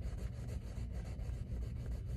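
Pencil shading on paper with medium pressure: quick back-and-forth strokes making a faint, steady scratchy rubbing.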